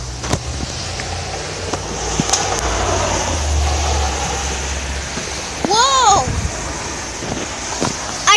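Wind buffeting the phone's microphone: a low rumble that swells about three to five seconds in, with a few handling knocks. A child gives a short high vocal exclamation about six seconds in.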